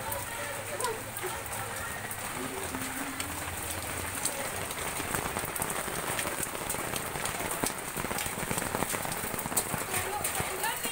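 Steady rain falling, with many separate drops ticking on hard surfaces.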